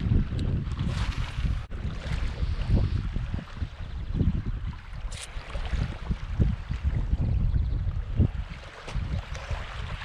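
Wind buffeting the camera's microphone: a low, gusty rumble that rises and falls unevenly, with one brief click about five seconds in.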